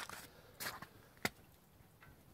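Faint footsteps on muddy, slushy ground: a short scuff about half a second in and a single sharp click just past a second.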